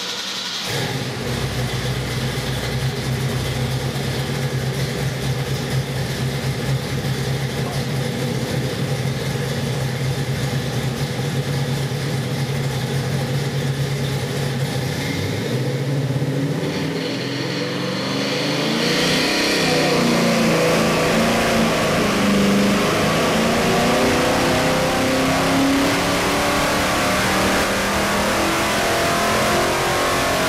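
Pontiac 461 cubic-inch stroker V8 running on an engine dynamometer: it holds steady at a fast idle around 1,800 rpm, then a bit past halfway goes into a full-power dyno pull, the pitch climbing steadily under load to about 5,300 rpm and some 500 horsepower near the end.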